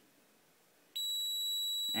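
Milwaukee M12 Sub-Scanner (2290-20) stud finder giving a steady high-pitched beep that starts suddenly about halfway in and holds on. It is the scanner's audio signal that it has found the center of a stud behind the drywall.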